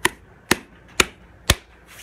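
Four sharp strikes, evenly spaced about half a second apart: a hand hitting a canvas bag full of sand that rests on concrete blocks.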